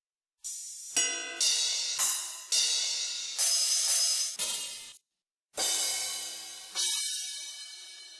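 Drum-machine cymbal samples (crashes, rides and hi-hats) auditioned one after another in FL Studio's file browser. There are about eight bright strikes, each decaying until the next sample cuts it off, with a brief gap about five seconds in.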